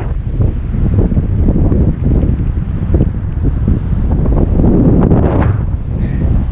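Strong gusting wind buffeting the camera's microphone: a loud, low rumble that rises and falls with the gusts.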